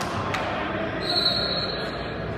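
Background noise of spectators in a gymnasium with indistinct voices. There is one sharp knock just after the start, and a steady high-pitched tone about a second long in the second half.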